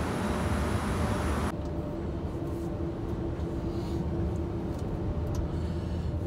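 Steady low rumble of a vehicle running, heard from inside the cab, with a steady hum over it. Until about a second and a half in, a louder open-air hiss of airport ramp noise lies over it, then cuts off suddenly.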